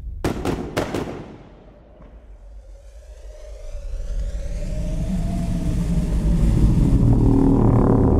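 Film-trailer score and sound design: a few sharp hits in the first second die away. A low rumble with a wavering held tone over it then swells steadily, loudest near the end.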